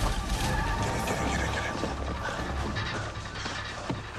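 Film soundtrack: music mixed with action sound effects, with a deep rumble that eases off about a second in.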